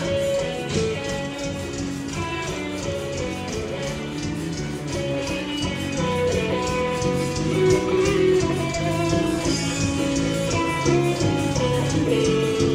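Live axé band music with guitar over a steady beat, without singing.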